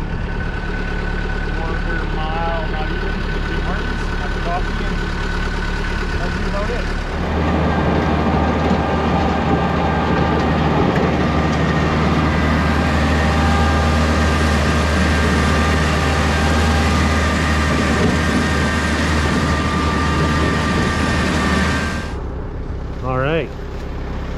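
A farm vehicle's engine running steadily as it drives along with a spin spreader, with a steady high whine over it. About seven seconds in it gets louder, with a deeper rumble and a rushing noise, and it drops back about two seconds before the end.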